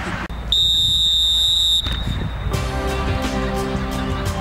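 A referee's whistle giving one long, steady, high blast of a little over a second, about half a second in. From about two and a half seconds in, music with a beat starts.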